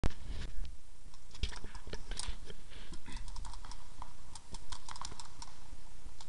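A rapid, irregular series of sharp clicks and knocks, several a second, with no steady rhythm.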